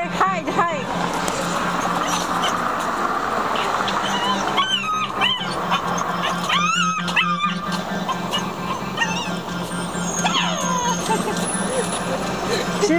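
Small puppy whining on the leash: high-pitched whines that rise and fall, coming a few times several seconds apart, over a steady background noise. The puppy is uneasy on her first longer walk.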